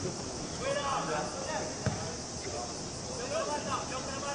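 Football players shouting and calling to each other on the pitch, with a ball struck sharply once about two seconds in, over a steady high drone of cicadas.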